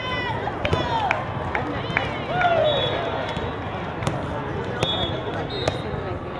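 Echoing din of a multi-court indoor volleyball hall: players' voices calling out and cheering, sharp smacks of balls being hit and bouncing on the hard floor, and a few short high-pitched tones.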